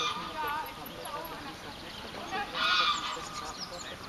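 Two loud honking animal calls, one right at the start and the second at about two and a half seconds, over faint background voices.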